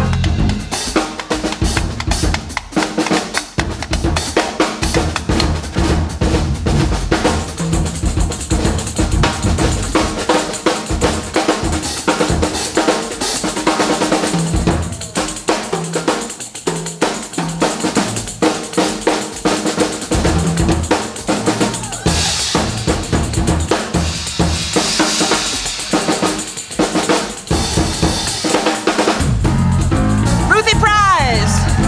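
Live jazz combo with the drums to the fore: busy drum-kit playing with snare, rim and bass-drum hits, and congas, over electric bass and keys. Cymbals wash up louder about three-quarters of the way through.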